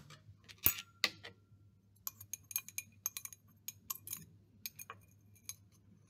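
Light glass clinks and taps: a copper wire and a small glass beaker of acetone being handled. One sharper clink that rings briefly comes near the start, then a scatter of small, faint ticks.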